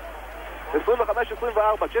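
Man commentating in Hebrew, calling out the score, over a steady background of arena crowd noise from the broadcast.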